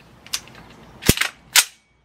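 Metallic clicks and clacks of an AR-style rifle with a 5.7 upper being handled: a light click, then two sharp clacks about half a second apart near the end.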